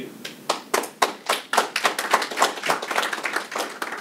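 Small audience applauding: many overlapping hand claps starting about half a second in and thinning out near the end.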